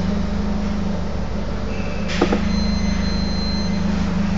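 A steady low mechanical hum with an even pulse, and a couple of short knocks a little over two seconds in.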